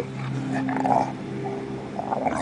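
Dogs growling low and steadily as they play-fight, with a short brighter yelp-like sound a little under a second in.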